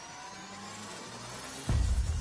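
Logo intro sound effect: several tones gliding slowly upward in pitch, then a sudden deep bass hit near the end.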